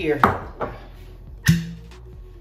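Glass liquor bottle knocking on a stone countertop: a sharp knock just after the start, a lighter one, then another sharp knock about a second and a half in.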